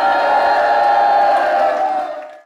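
Many voices together holding one long, steady cry, like a crowd's unison response, fading out at the end.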